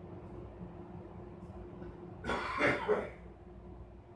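A woman coughs briefly, a short double cough a little past halfway, over a steady low hum of room noise.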